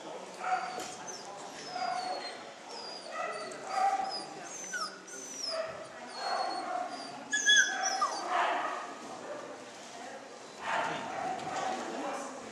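A dog barking and yipping over and over in short, high yelps, with the loudest cluster about seven seconds in.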